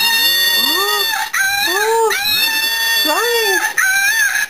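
Sound box in a plush chipmunk toy, squeezed to make it 'cry', playing a loud recorded animal call. The call has warbling notes that rise and fall about once a second over steady high tones, and it cuts in suddenly.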